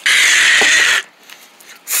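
A loud mouth-made hissing 'kshhh' sound effect for about a second that stops abruptly, then quiet.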